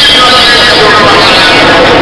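Loud, heavily distorted voices with no clear words, running steadily without pauses.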